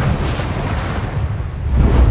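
Film sound effect of a spacecraft explosion. A blast that began just before goes on as a loud, dense rushing noise over a deep rumble, swelling again near the end. It is an added effect, since a real explosion in space would make no sound.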